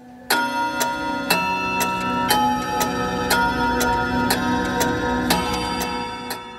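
F. Marti French eight-day mantel clock striking the hour on its bell, about one strike a second, each ring carrying on under the next, with the movement ticking underneath.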